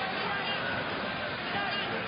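Football stadium crowd noise: a steady din of many voices blending into one continuous murmur.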